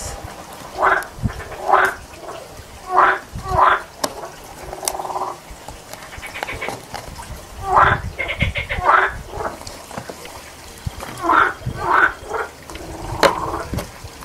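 An animal calling in short calls, mostly in pairs, with each pair repeating every few seconds.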